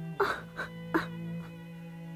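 A person coughing and clearing their throat in three short bursts in the first second, over background music of sustained bowed-string notes.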